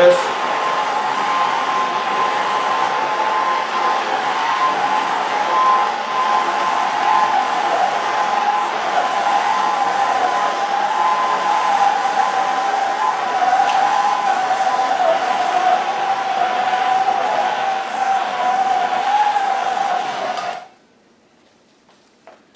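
Handheld gas torch burning with a steady hiss and a faint wavering whistle as its flame is passed over wet epoxy to pop air bubbles; it cuts off suddenly near the end.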